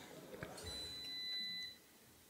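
A faint, steady electronic tone, held for about a second in a quiet room, then cutting off.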